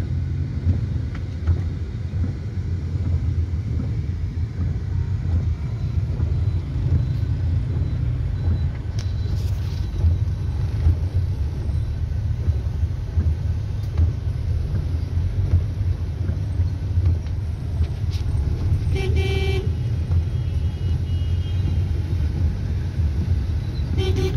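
Car engine and road noise heard from inside the cabin while driving in traffic, a steady low rumble. A vehicle horn toots briefly about nineteen seconds in.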